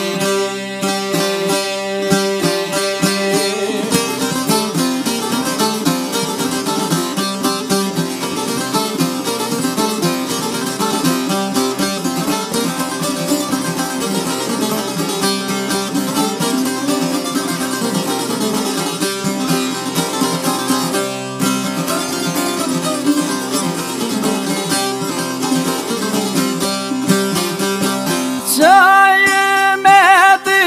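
Albanian folk music in an instrumental passage: çifteli, long-necked two-stringed lutes, plucking a quick, busy melody over a steady rhythm. A bright, wavering melodic line comes in near the end.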